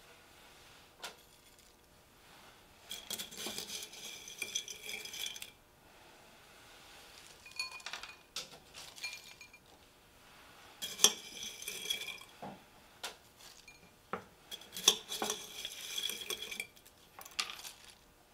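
A metal spoon clinking and scraping against glass jars and bowls as salad toppings are scooped out: three runs of ringing clinks a few seconds apart, with a few single taps between.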